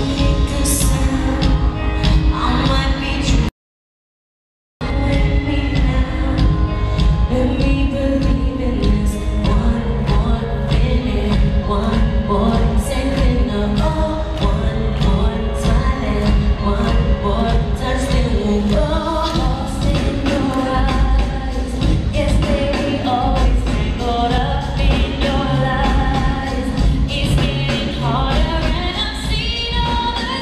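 Live pop song: female vocalists singing into microphones over a band backing with a steady beat. The sound cuts out completely for about a second early in the song, then returns.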